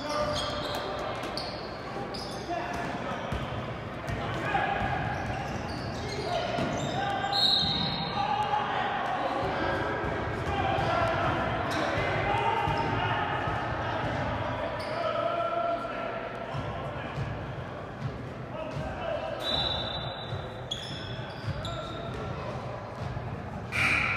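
A basketball bouncing on a hardwood gym floor, mixed with players' and spectators' shouts that echo around a large gym.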